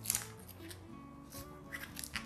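Soft background music with faint, brief crinkling rustles of tape being pulled taut and wrapped around a bouquet's gathered stems; the clearest rustle comes just at the start.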